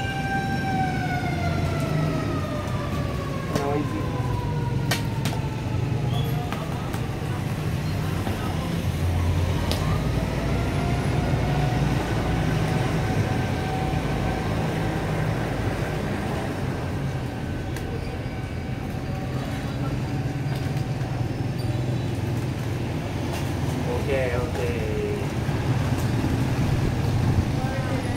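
Steady low rumble of road traffic. Over it, a vehicle engine's pitch falls slowly over several seconds, then rises again and holds. A few light clicks come from packaging being handled.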